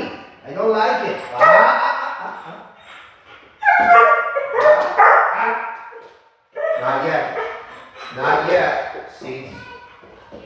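A puppy whining and yipping in three long, wavering bouts with short breaks between them, while it jumps up at the handler's hand.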